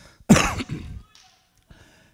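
A man coughing once into a microphone, a loud, sudden cough about a third of a second in that trails off quickly.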